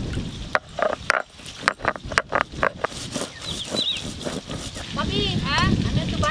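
A stone roller knocks on a stone grinding slab (shil-nora) in a quick run of sharp taps as cashews and poppy seeds are crushed. Then frogs croak in quick repeated bursts during the second half.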